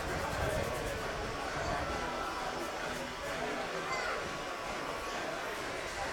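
Faint, steady ambience of a small football ground: distant voices and crowd chatter over a low hiss.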